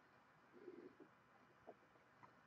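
Near silence: room tone, with a faint low murmur and a couple of tiny ticks.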